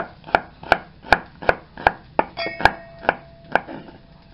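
Chef's knife slicing shallots on a wooden cutting board: a steady run of knocks, about three a second, as the blade strikes the board.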